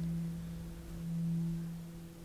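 A sustained low drone tone from the film's score, one steady pitch with faint overtones, swelling and easing gently.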